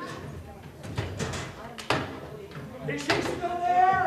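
A few sharp wooden knocks and a slam as the illusion's large blade panels are pulled out of the wooden boxes, then a held voice sound near the end.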